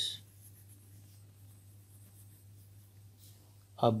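Pen writing by hand on paper: faint scratching as a word is written out. A faint steady low hum runs underneath.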